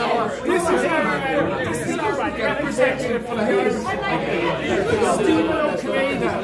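Several men's voices talking over one another, a steady babble of pub chatter with no single clear speaker.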